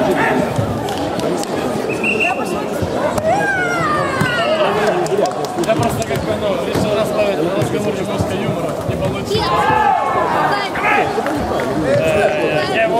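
Overlapping voices in a crowded sports hall: chatter and shouted calls from onlookers, with a few short knocks.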